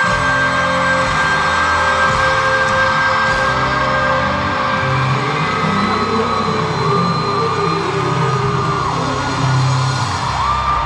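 Live slow R&B music through an arena sound system, with held keyboard notes over a moving bass line. Audience yells and whoops rise over the music.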